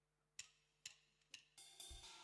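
Drummer's count-in: three sharp ticks about half a second apart, then the band's sound starting to swell near the end.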